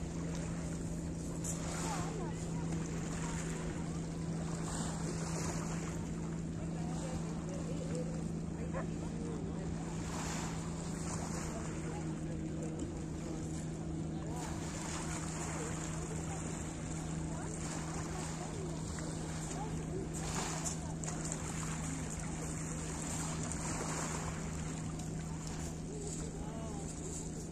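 Steady outdoor beach ambience: wind on the microphone over a constant low hum, with faint distant voices.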